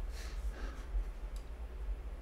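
A couple of faint, light clicks at a computer desk over a low steady room hum.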